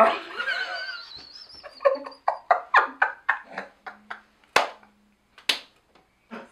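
People laughing: a laugh sliding in pitch that trails off, then a run of short, breathy laughing bursts with gaps between them that die away near the end.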